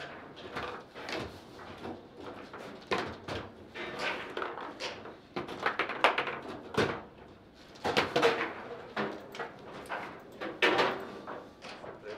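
Table football (foosball) play: a run of irregular sharp knocks and clacks as the ball is struck by the plastic figures and the metal rods slide and knock against the table, with several louder hits. A goal is scored in the second half.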